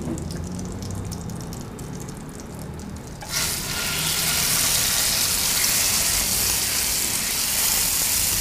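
Marinated chicken sizzling in hot butter and olive oil in an electric skillet. The sizzle starts suddenly about three seconds in, as the chicken goes into the fat, then holds steady.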